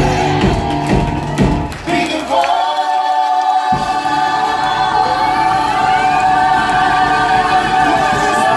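A group of singers and a live band performing together, the voices singing in harmony. About two seconds in the bass and drums drop out and the voices hold a long chord alone, and the band comes back in under it a second and a half later.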